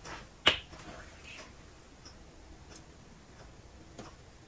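A plastic dish soap bottle and a glass soap dispenser being handled: one sharp click about half a second in, then only faint soft sounds as the soap is poured.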